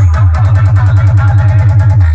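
Loud electronic DJ music from a large stack of DJ sound-system speaker boxes: a rapid, even roll of deep bass hits, each dropping slightly in pitch, under synth tones.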